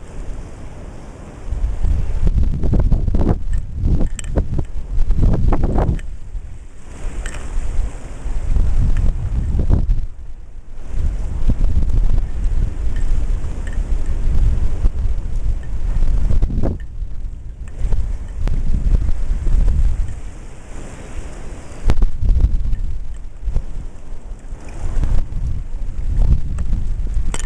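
Wind buffeting the microphone in gusts, a loud low rumble that surges and drops with brief lulls, over the wash of ocean surf.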